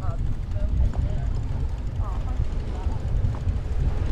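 Uneven low rumble of wind buffeting the microphone of a camera on a moving bicycle, with faint voices in the background.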